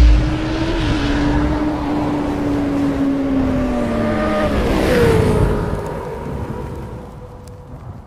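Motorcycle engine sound effect: a deep hit, then a steady high engine note that drops in pitch about four and a half seconds in with a swish, fading out toward the end.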